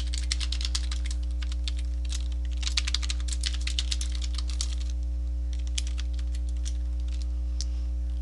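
Computer keyboard typing in quick bursts of keystrokes with short pauses, thinning out to scattered keys after about five seconds, over a steady low electrical hum.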